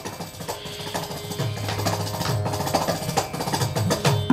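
Carnatic hand percussion on mridangam and kanjira: a fast, soft run of light strokes.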